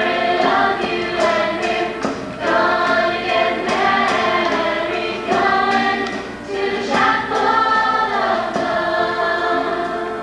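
Mixed-voice youth show choir singing in full harmony with musical accompaniment, part of a medley of 1950s and 60s pop songs.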